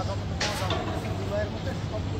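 A boat's engine running with a steady low drone, with people's voices calling out over it about half a second in.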